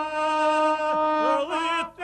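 Gusle, the single-string bowed folk fiddle of epic song, bowed in a long held line that slides up to a new note about one and a half seconds in, breaking off briefly just before the end.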